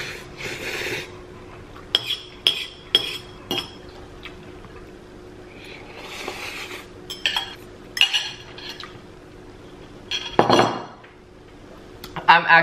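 Noodles slurped off a metal fork, once at the start and again about six seconds in. The fork clinks sharply against the bowl several times in between and after. A short, louder rush of breath comes near the end.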